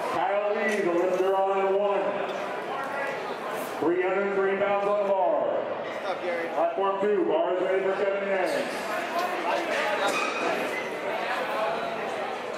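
A man's voice over a PA microphone, announcing in three long, drawn-out phrases, with the chatter of a crowd underneath.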